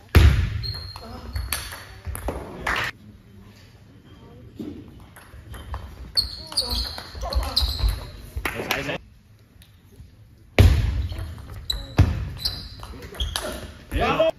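Table tennis rallies: the ball clicking off bats and table again and again. Spectators' shouts and cheers break out suddenly near the start and again about ten and a half seconds in.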